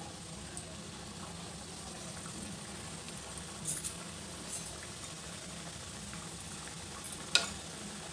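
Khaja pastries deep-frying in hot oil in a kadhai over a medium flame: a steady, soft sizzle, with a couple of faint brief clicks about midway and near the end.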